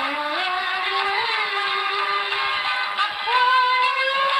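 A woman singing a Tamil song unaccompanied, in long held notes that glide slowly; the pitch steps up to a higher note about three seconds in.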